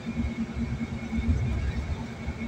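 Steady low road and engine rumble of a car travelling at highway speed, heard from inside the cabin, with a faint steady hum over it.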